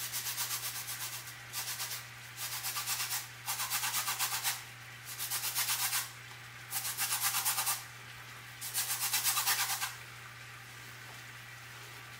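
Lemon rind being zested on a fine metal rasp grater: quick scraping strokes in about seven bursts of a second or so each, with short pauses between, stopping about ten seconds in.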